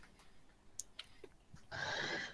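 Quiet room tone with a few faint, separate clicks about a second in. A soft breathy sound starts near the end.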